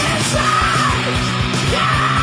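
Heavy metal band playing loud, with steady drum hits under distorted guitars and a high, held lead line that bends in pitch over the top.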